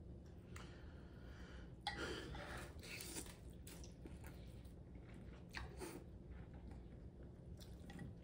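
Someone eating rice noodles from a bowl of pho: faint slurping and chewing, with a few soft clicks of chopsticks and spoon against the bowl. The loudest moments come about two seconds in and again near six seconds.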